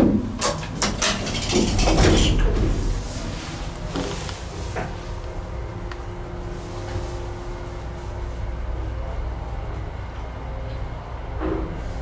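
Old 1950 Otis single-speed traction elevator: the car doors slide shut with a clatter, two sharp clicks follow about four and five seconds in, and then the hoist motor runs with a steady hum and whine as the car rises.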